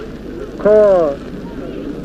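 Speech only: a man's voice says one short word, falling in pitch, over a steady background hiss.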